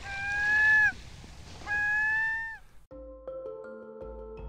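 Intro sound effects: over a faint rush of water, two long pitched calls, each just under a second, hold their note and dip at the end. Music with held notes at several pitches starts about three seconds in.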